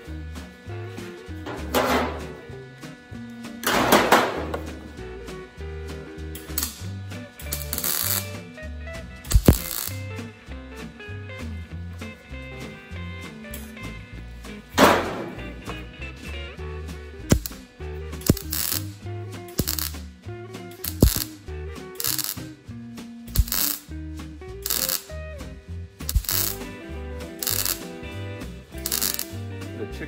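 MIG welder laying short tack welds on sheet steel: about fifteen brief bursts of arc crackle, a few seconds apart at first, then about one a second in the second half. Background music with a steady beat runs underneath.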